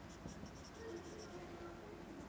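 Marker pen drawing on a whiteboard as a curve is traced: faint, short scratchy strokes.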